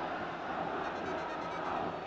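Football stadium crowd noise, a steady even din with no single shout or chant standing out.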